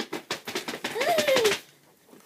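Quick run of taps and clatter, with a single meow-like cry about a second in that rises and then falls in pitch.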